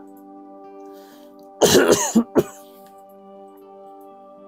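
A man coughs and clears his throat about one and a half seconds in, with a short second cough just after. Quiet background music with steady held tones runs underneath.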